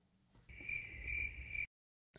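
Faint cricket chirping sound effect: a steady high trill starting about half a second in, lasting just over a second and cutting off abruptly. It is the comic 'crickets' cue for an awkward silence.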